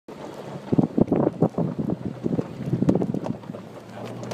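Nissan Xterra jolting over a rough, rocky dirt road: an uneven run of knocks and thumps from the body and suspension over a low engine hum and wind rumble on the microphone.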